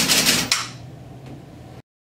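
Six stepper motors of a Rubik's cube-solving robot turning the cube faces in a rapid burst of clatter lasting about a second, ending sharply about half a second in. The sound then cuts off completely near the end.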